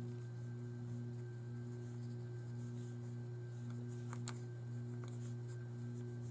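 A steady low hum, with faint light brushing and a few soft ticks about four and five seconds in, as a small round watercolour brush works water and paint across a paper card.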